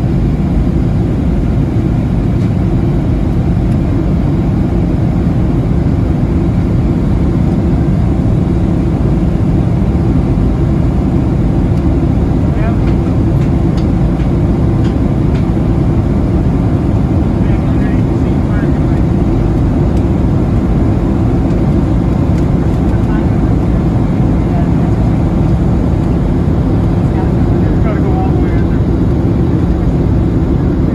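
Steady low roar of a Boeing 737-700 in flight, heard from inside the passenger cabin: airflow and CFM56-7B engine noise, unchanging throughout. Faint voices come through it in the middle and near the end.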